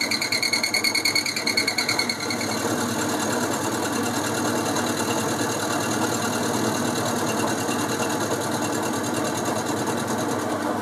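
Boxford lathe running an end mill in its spindle, milling across the face of a metal workpiece held in the tool post. For about the first two seconds the cut pulses rapidly with a high ringing, then the sound settles into a steadier machining noise.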